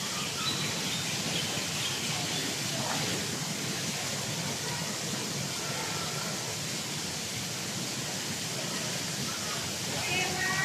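Steady open-air background noise by an outdoor swimming pool, with a few faint high calls scattered through it.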